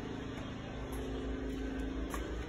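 A steady low machine hum with a faint pitched drone, like building ventilation or a motor running.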